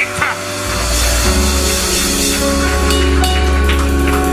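Background music of sustained, held chords over a deep steady bass note that comes in about a second in, with more notes joining soon after.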